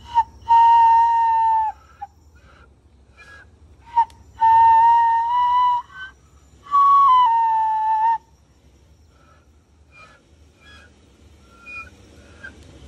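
Bone kōauau (Māori end-blown flute) played in three long, clear notes near the same pitch. The third starts a little higher and steps down. Near the end come a few faint, short attempts at a further tone that does not yet sound cleanly.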